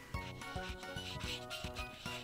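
Background music with a steady beat, over the broad chisel tip of a marker rubbing back and forth on colouring-book paper.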